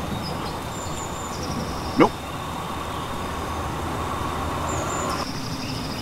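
Steady outdoor background noise with a few short, faint high-pitched chirps over it.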